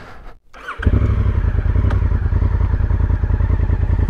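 Honda CRF1000 Africa Twin's parallel-twin engine starting about a second in, then running steadily at idle with a fast, even low pulse.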